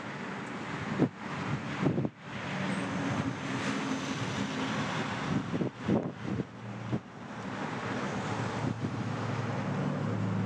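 Outdoor wind blowing across the microphone, with a steady low hum underneath and a few short gusty thumps.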